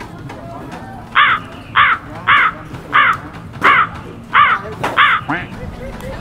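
A woman laughing loudly in seven high-pitched cackles, evenly spaced, starting about a second in.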